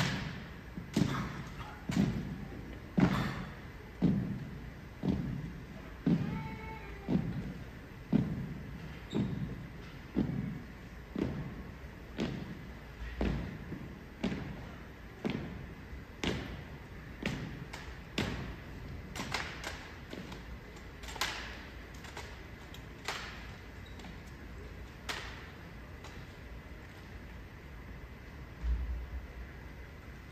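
A rifle drill team's unison stomps and rifle strikes on a hardwood court, echoing in a large hall. For the first half there is a steady thump about once a second; after that come sharper, scattered slaps and clicks of hands on rifles, which thin out near the end.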